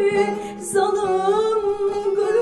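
A woman singing a Turkish folk song (türkü) into a microphone in a wavering, ornamented melody. There is a brief break between phrases about half a second in.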